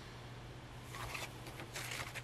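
Paper page of a discbound planner being turned: a faint swish about a second in and another near the end.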